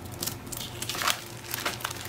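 Clear plastic packaging of a rice paper sheet crinkling and rustling in short, light bursts as the pack is handled and slid aside.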